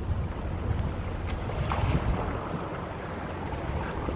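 Wind buffeting the microphone with a steady low rumble, over faint water sounds from the pool.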